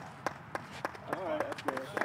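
People talking, with a run of sharp clicks about three times a second.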